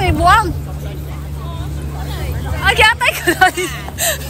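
Outdoor ambience of people's voices, with short bursts of talk near the start and again late on, over a steady low rumble.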